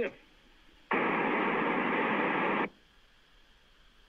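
Amateur radio receiver with its squelch opened, letting through a burst of steady static hiss that starts about a second in, lasts just under two seconds and cuts off suddenly. It is heard through the phone line that links the radio to the call.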